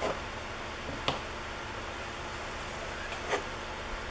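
Steady background hiss with three faint, brief clicks and rustles from a knife trimming excess clay off a slab and the cut strip being handled.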